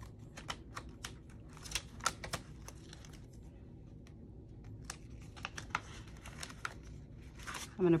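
Plastic binder pockets and paper bills crinkling and rustling as cash envelopes are flipped through and bills are pulled out. It comes as a string of short clicks and crinkles, with a quieter second or so in the middle.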